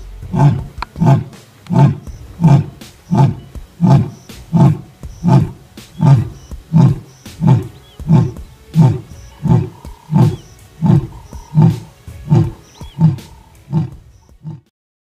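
Male lion roaring: a long, steady series of about twenty short, deep calls, roughly one and a half a second, evenly spaced.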